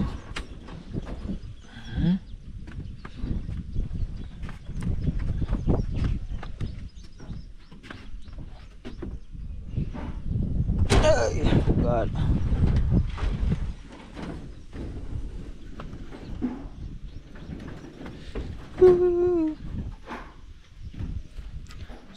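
Camera handling and wind rumble on the microphone with scattered knocks of feet and hands on timber formwork as someone climbs down, with a short loud vocal exertion sound about halfway through and a brief hum-like vocal sound near the end.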